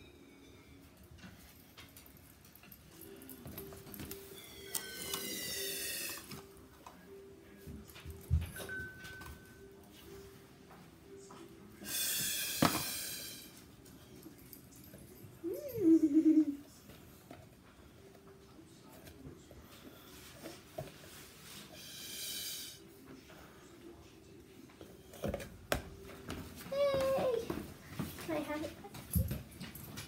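A pink Wubble Bubble ball being blown up by mouth: three long, breathy puffs of air pushed into it, spaced several seconds apart. There is a short, loud squeak about halfway through, and a faint, steady, low hum underneath.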